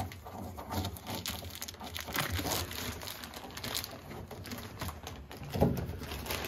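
Black plastic garbage bag rustling and crackling irregularly as it is pulled and tucked over the rim of a dust collector barrel under a bungee cord.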